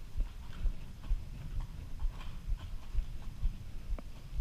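Horse's hooves moving over sand arena footing: a steady, even beat of dull thuds about twice a second.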